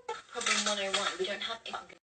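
Dishes and utensils clattering as they are handled, with a woman's voice over it. The sound stops abruptly at the end.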